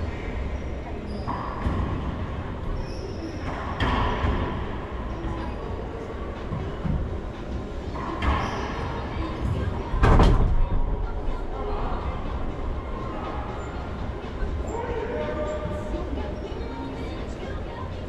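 Racquetball rally in an enclosed court: hard hits of the ball off racquets and walls, each echoing around the court, the loudest about ten seconds in, with a few sneaker squeaks over a steady hollow room rumble.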